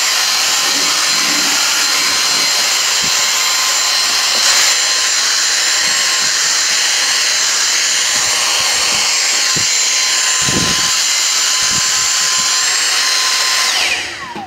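Dyson DC59 Motorhead cordless stick vacuum running steadily on a hard floor: a loud, high-pitched motor whine over rushing airflow. It is switched off at the very end, its whine falling away as the motor spins down.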